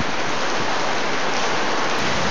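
Heavy tropical downpour: a steady, dense hiss of rain falling on a wet street.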